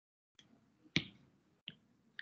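A single sharp click about a second in, with a couple of fainter ticks around it, in an otherwise quiet pause.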